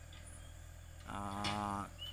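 A man's voice holding a drawn-out hesitation sound ("ehh") for just under a second, about a second in, between stretches of faint low background hum.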